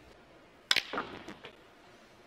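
Snooker balls clicking: a sharp click of the cue striking the cue ball, about two-thirds of a second in, is followed within a split second by the cue ball hitting an object ball, then a few softer ball knocks.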